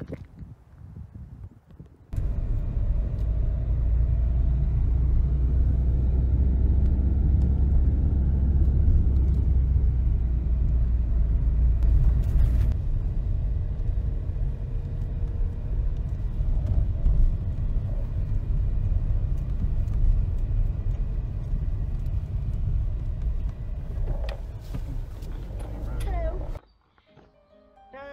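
Car driving, heard from inside the cabin: a steady low rumble of engine and road noise that starts about two seconds in and cuts off shortly before the end.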